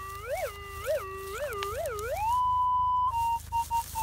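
Metal detector's audio tone: a steady low hum that swells up in pitch four times as the coil swings over a buried target, then glides up to a higher steady tone and breaks into short beeps. It is signalling a coin-sized target that could be a penny, lying not very deep.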